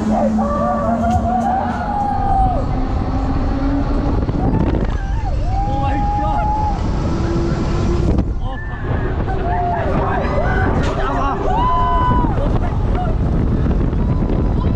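Wind rushing and buffeting over the microphone on a fast-moving fairground ride, with voices letting out long, drawn-out cries over it several times.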